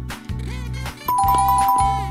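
Background music with a steady beat. About halfway through, a two-note ding-dong chime comes in with two held high tones that pulse a few times.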